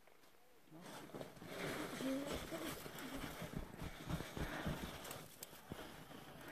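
Faint crunching and scraping of packed snow, with muffled voices in the background.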